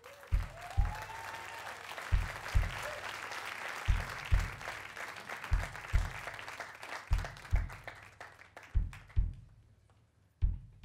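Audience applauding and cheering, with a short rising whistle about a second in; the applause fades away near the end. Underneath, a low double thump repeats evenly about every second and a half.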